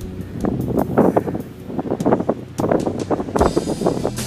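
Wind buffeting the camera microphone outdoors in irregular, loud gusts.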